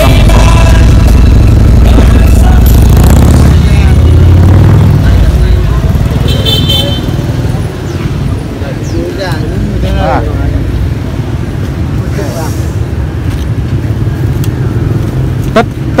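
A motorcycle engine running close by, loud for about the first five seconds and then fading away, with street chatter around it.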